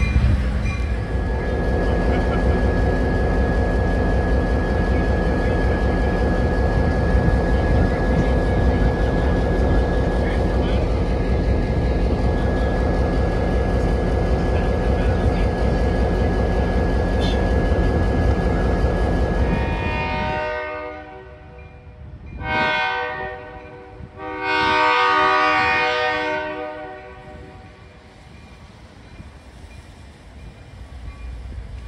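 A diesel locomotive running close by, a loud steady engine rumble with a faint steady high tone over it. About two-thirds of the way in the sound cuts to a distant train's air horn blowing a long blast, a short blast and a longer blast.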